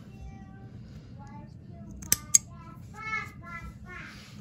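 Two quick, sharp scissor snips about two seconds in, cutting the tip of a sewn fleece seam, with a child's faint singing in the background.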